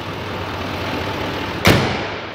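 6.6-litre L5P Duramax V8 diesel idling steadily, then the truck's hood slammed shut near the end, a single loud bang.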